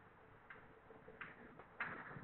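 Chalk on a blackboard: three short taps and scrapes as characters are written, about half a second, a second and just under two seconds in, the last the loudest, over faint room tone.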